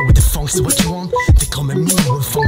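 Hip hop track: a beat of drum hits over a deep bass line, with short pitched notes and a rapping voice on top.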